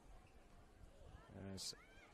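Near silence: faint open-air ambience of a football ground, then a single short spoken word from the commentator about one and a half seconds in.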